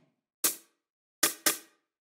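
Three short, bright noise hits from a software sampler playing a slice of a recording of tonic water poured into a bowl. The carbonation fizz is cut short by a fast decay, giving a hiss-like hit meant as the noisy top-end layer of a homemade snare.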